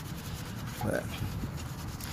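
A microfiber wheel brush scrubbing wheel cleaner over the spokes of a gloss-black alloy wheel, a soft wet rubbing that loosens built-up brake dust.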